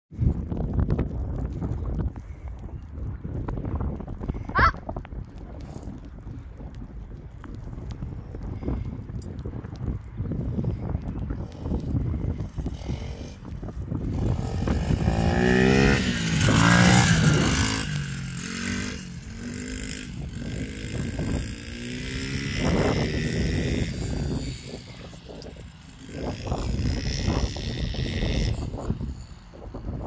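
Pit bike engine running and revving, rising to its loudest about halfway through as the bike passes close, then fading and swelling again as it rides further off.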